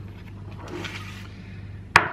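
Faint rustling of thin yufka pastry sheets handled on a wooden cutting board over a steady low hum, with one sharp click near the end.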